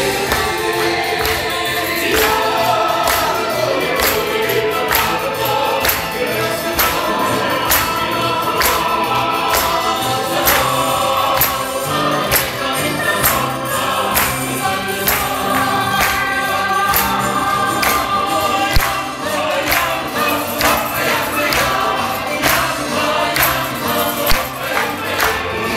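A group of voices singing a lively song together over instrumental accompaniment, with a steady percussive beat.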